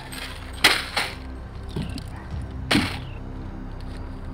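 Three sharp hit sound effects of a staged fist fight, the loudest about two-thirds of a second in, another a moment later and a third near the end, over steady background music.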